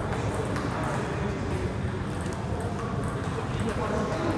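Table tennis balls clicking off bats and tables, irregular sharp ticks from several tables at once, over a steady murmur of voices in the hall.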